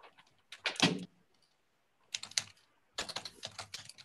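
Sheets of paper being picked up, shuffled and set down on a table, in three short bursts of rustling and light knocks, picked up by a video-call microphone.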